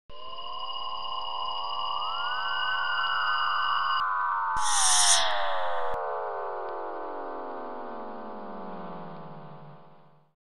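Synthesized intro sound effect: a few steady electronic tones, then a dense cluster of tones that glide up briefly and then slide steadily downward in pitch for several seconds, with a short burst of hiss about halfway through. It fades out at the end.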